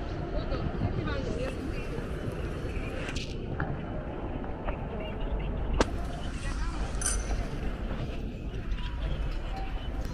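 Busy airport terminal hall ambience: a steady background hum with scattered voices of passing travellers and light ticks. A single sharp click stands out a little before six seconds in.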